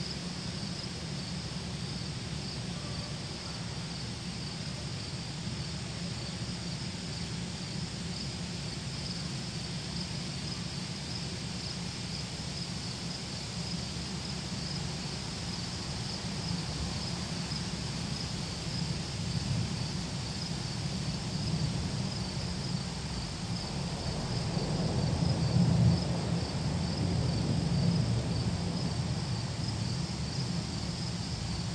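A steady, high-pitched insect chorus chirring without a break. Under it runs a low rumble that grows in the second half and is loudest a few seconds before the end.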